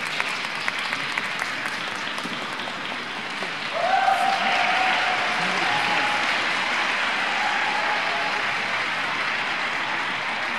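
Audience applauding a figure skater's finished program, a steady clapping that swells about four seconds in.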